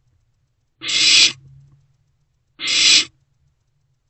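Barn owl owlets' hissing food-begging calls ('snores'): two harsh hisses about half a second each, nearly two seconds apart.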